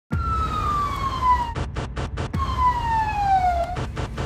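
Emergency-vehicle siren: a long falling wail, a quick burst of four short pulses, then another falling wail, over a steady low rumble.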